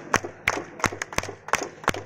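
A group of people clapping their hands together in time, a steady beat of about three claps a second.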